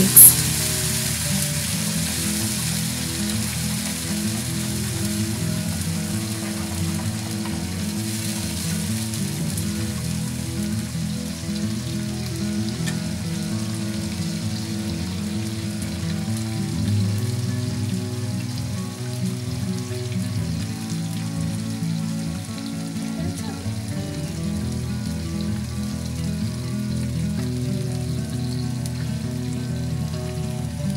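Spiced tomato gravy frying and sizzling steadily in a pan, stirred with a wooden spatula at first. Soft instrumental background music plays throughout.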